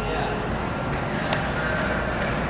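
Steady outdoor background noise with a low hum and faint voices in the background.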